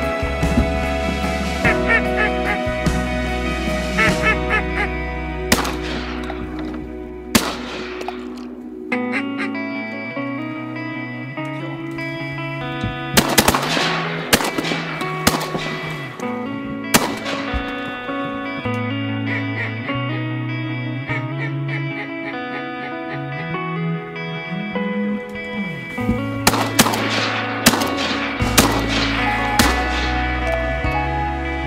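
Background music with a steady bass line, over which shotgun blasts crack out, a pair near the start, a volley around the middle and another near the end. Duck quacks come through in the first few seconds.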